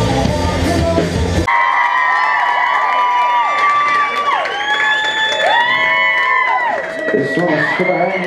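A live rock band plays loudly and stops abruptly about a second and a half in, as a song ends. The audience then cheers, with long high whoops and yells that rise and fall away, and a man's voice starts speaking near the end.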